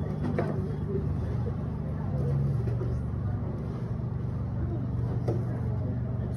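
A steady low mechanical hum, like a running motor, with faint voices in the background.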